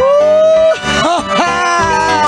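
Salsa music from a live band. A held note slides up into place at the start, and a couple of short swooping notes follow it.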